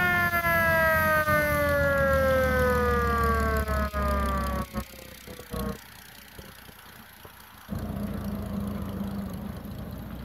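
Antique fire engine's siren winding down in one long, slowly falling wail that fades out about five seconds in. The truck's engine then runs louder as it passes close by, from about eight seconds in.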